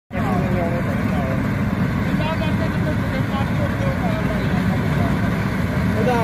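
Combine harvester running steadily as it cuts paddy, a continuous low rumble, with people's voices talking over it.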